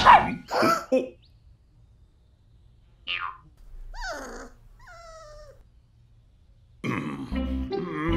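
Animated cartoon soundtrack: a loud burst of music and cartoon effects in the first second, then a near-quiet gap. Around the middle come a few short vocal noises with falling pitch, and music comes back in near the end.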